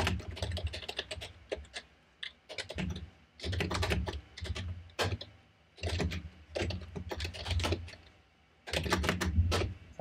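Typing on a computer keyboard: bursts of rapid key clicks with brief pauses, one about two seconds in and another near the end.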